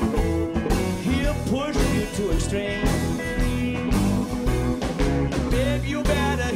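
A live blues band playing: electric guitar, acoustic guitar, electric bass and drums together, with some notes sliding in pitch.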